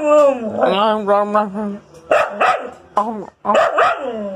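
A husky "talking": one long warbling call of about two seconds, then a string of four or five short yowling calls. She is demanding a share of the owner's food.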